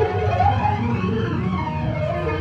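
A rock band playing live, with electric bass and guitar in a dense, steady mix, heard from among the audience in a concert hall.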